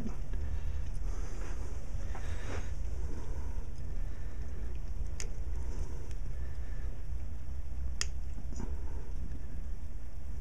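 Steady low hum, with a faint scrape early on and two faint, sharp clicks about five and eight seconds in, as needle-nose pliers squeeze a fine steel music-wire pigtail bearing.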